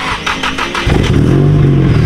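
Nissan S15 Silvia's engine being cranked by the starter, catching about a second in and settling into a steady idle.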